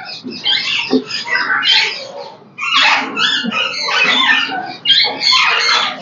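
Alexandrine parakeet in its nest box giving a run of harsh, raspy calls in irregular bursts, with a short pause about halfway through.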